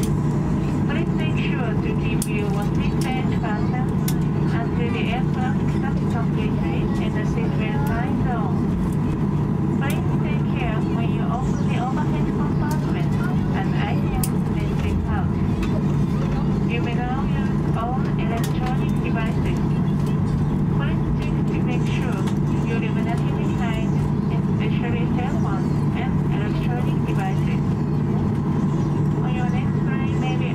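Steady low drone of a Boeing 737-800's cabin, its CFM56 engines running at taxi power as the jet taxis after landing, with a cabin crew announcement over the PA system.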